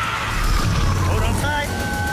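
Dramatic trailer sound mix: a deep, constant rumble under a fading noisy swell, with two high held tones coming in about a second and a half in.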